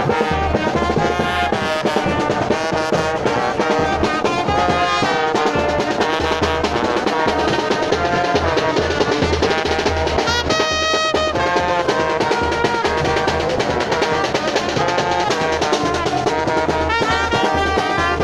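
Small street brass band playing live: trombones and a trumpet carry a lively tune over a steady bass drum beat.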